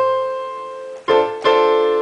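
Electronic keyboard with a piano voice: the fifth finger's C is struck alone, then about a second in the full D minor seventh chord (D, F, A, C) is played, struck twice in quick succession and left ringing.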